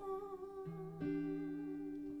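Live song: a woman's voice holds one long steady note, hummed or sung, while an electric guitar plays chords under it, a new chord coming in about a second in.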